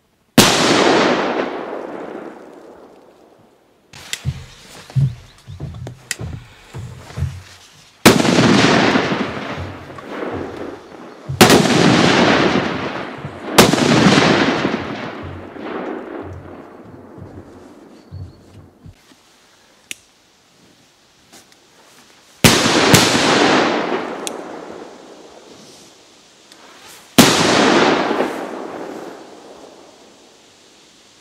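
A Funke Jumbo Color Whistle Thunder firework going off: six loud bangs spread out irregularly, two of them close together, each dying away over a few seconds. Between the first and second bangs comes a run of smaller crackling pops.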